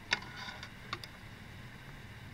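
Faint handling sounds at a fly-tying vise at the end of a whip finish: a couple of small clicks about a second apart, with light rustling of hands and tools.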